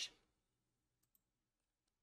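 Near silence with one faint mouse click about a second in.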